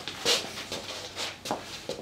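A few soft knocks and rustles, spaced out over about two seconds, from a framed plaque being handled and feet shuffling on a wooden floor.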